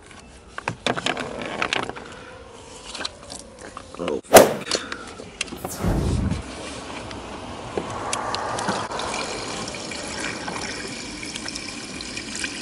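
Plastic bag of windshield washer fluid being handled and uncapped, with scattered clicks and crinkling and one sharp click about four seconds in. From about halfway through, washer fluid pours steadily from the bag into a Tesla's washer fluid reservoir.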